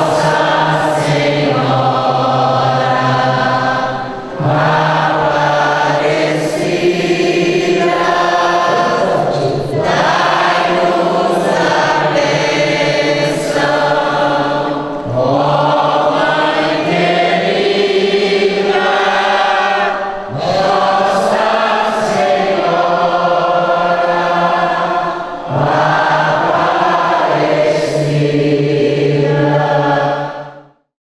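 A church congregation singing a hymn together in long held phrases, with a short break for breath about every five seconds.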